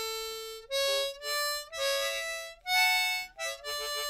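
A harmonica playing a slow melody: single held notes that change pitch, with short breaks between them. Near the end it holds one note pulsed about five times a second.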